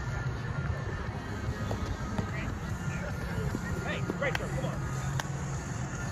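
Sharp slaps of a roundnet ball being hit, a little over four and five seconds in, over a steady background of distant voices and music.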